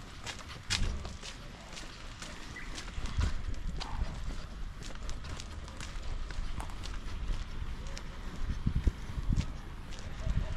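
Footsteps on a concrete footpath, a string of sharp clicks over a low rumble that swells now and then.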